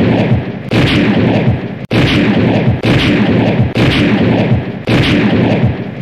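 Gunshots fired in a steady series, about one a second, each ringing out with a long echoing decay before the next.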